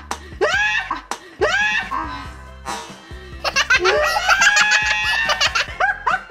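People laughing and shrieking, the laughter peaking in a long high-pitched burst of shrieks past the middle, over background music.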